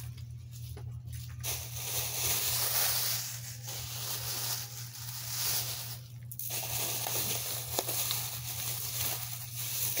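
Plastic shopping bag rustling and crinkling as items are rummaged out of it, in two stretches with a short break about six seconds in, over a steady low hum.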